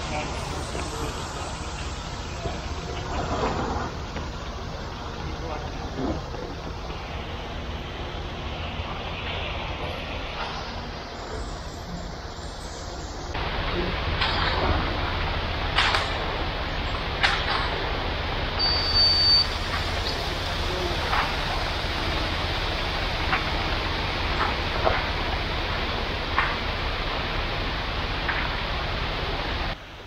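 A ready-mix concrete truck's diesel engine runs steadily at the pour, with a few sharp knocks and clatters of tools and distant voices of the crew.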